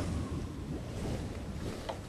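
A steady low rumble of wind with a faint whistling tone in it and a small click near the end.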